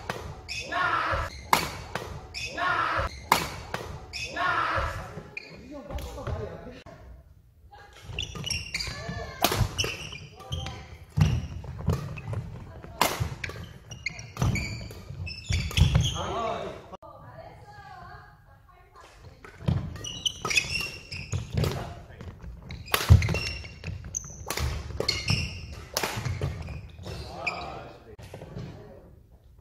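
Badminton doubles rally: sharp racket hits on the shuttlecock and players' footfalls on a wooden court floor, echoing in a large hall. The hits come in quick irregular runs, with two short lulls between rallies.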